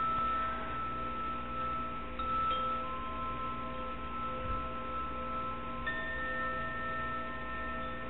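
Quiet, long-ringing chime tones: several notes at different pitches held for seconds and overlapping. A new note comes in about three seconds in and a higher one near six seconds.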